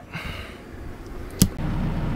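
A sharp click about one and a half seconds in, then the motorhome's onboard generator running with a steady low hum.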